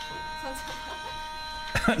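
Singing from the clip holds one long, steady high note, then a man bursts out laughing near the end.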